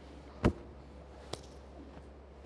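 Two short pats of a man's hand on his own head and body as he mimes baseball signals, the first louder, about a second apart, over quiet room tone.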